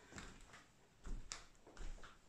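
Faint footsteps of a person walking indoors: three soft footfalls spread about evenly through the two seconds.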